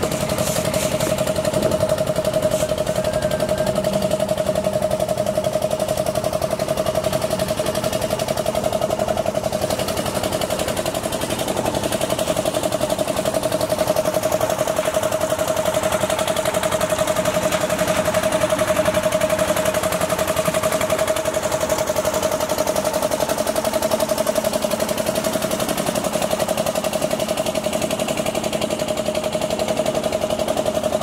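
Concrete mixer's engine running steadily at a constant speed: one unchanging hum that holds the same pitch throughout.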